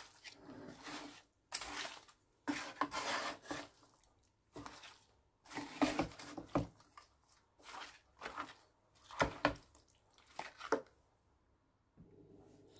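Wooden spatula mixing raw beef chunks and sliced onions in a non-stick frying pan: a string of irregular scraping strokes, roughly one a second, stopping about a second before the end.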